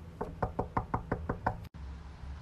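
Knuckles knocking rapidly on a panelled door: a quick, even run of about eight knocks.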